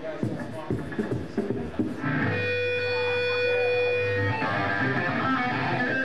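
Live rock band starting a song: a few loose hits in the first two seconds, then an electric guitar chord rings out steadily for about two seconds before the band plays on.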